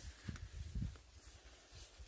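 Footsteps walking outdoors: a few low, soft thumps in the first second, then only faint outdoor background.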